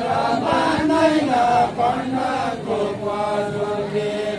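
A group of men singing a Deuda folk song together in a chant-like unison while dancing in a linked line, their melody moving in short phrases and then settling into one long held note in the second half.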